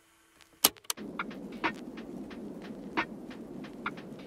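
Faint room tone with a steady hum, broken by two sharp clicks, then lo-fi background music starts about a second in with a slow, regular beat.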